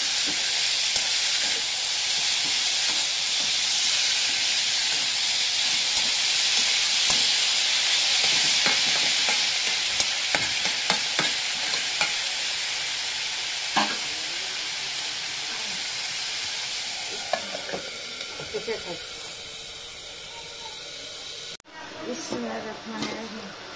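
Shredded vegetables sizzling steadily in hot oil in a metal wok, with a flat metal spatula stirring them and scraping and clicking against the pan now and then. The sizzle eases off in the last few seconds and cuts off suddenly just before the end.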